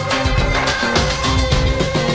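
Background music: an upbeat instrumental track with a stepping bass line and a steady beat.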